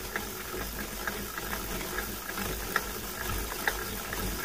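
A steady low hum under faint background noise, with a few faint ticks scattered through it.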